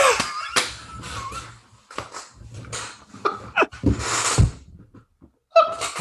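Men laughing hard in breathless bursts with short pauses, dying down about five seconds in.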